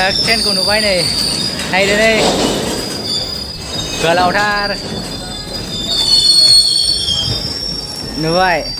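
Freight wagon wheels squealing on the rails: several high, thin tones that hold and waver slightly.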